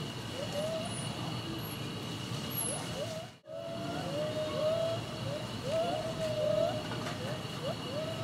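Geoffroy's spider monkeys calling: a string of short calls that each rise and then level off, repeated many times over a steady low rumble. The sound drops out for a moment about three and a half seconds in.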